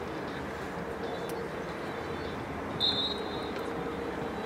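A short, high referee's whistle blast about three seconds in, over steady outdoor background noise.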